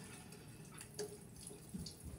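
Faint rustling of damp hair being handled and crossed into a braid, with a soft click about a second in.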